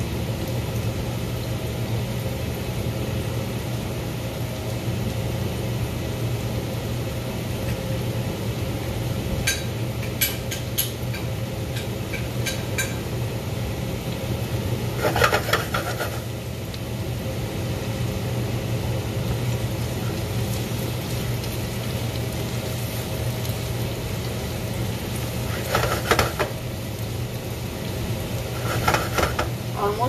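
Vegetables sizzling steadily in a pan over a gas burner. There are a few light clicks, a short clatter as the pan is handled about halfway through, and utensil stirring and scraping in the pan near the end.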